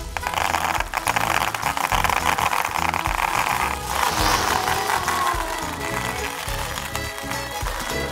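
White plastic pony beads pouring from a plastic bag into a plastic tray, a dense pattering rattle that lasts about four seconds and ends in a short swish, over background music.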